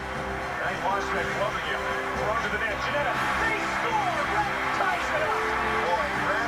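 Background music with held notes, over an arena crowd's many overlapping voices shouting and yelling during live hockey play.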